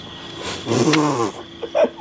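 A man's voice making a drawn-out, wordless vocal sound that falls in pitch, just under a second long, then a short vocal burst near the end.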